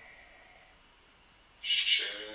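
Faint room noise, then near the end a loud hissing 'sh' sound as a voice begins a drawn-out chanted syllable.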